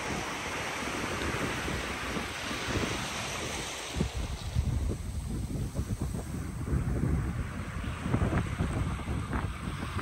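Sea surf washing up a beach: a steady hissing rush of foam and water, which eases about four seconds in to lower, uneven rumbling gusts of wind on the microphone.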